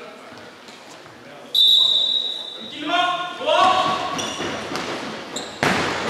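A referee's whistle blows once, held for about a second, then players shout calls that echo around a large sports hall. Just before the end a sharp slap sounds as the giant kin-ball is struck.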